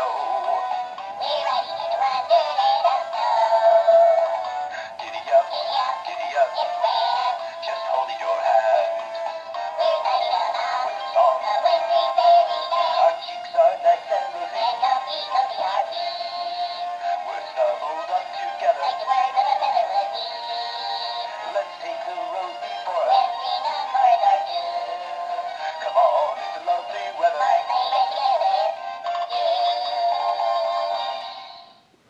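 Animated plush Santa-and-reindeer Christmas decoration playing a sung Christmas song through its small built-in speaker while its figures move; the sound is thin and tinny, with no bass.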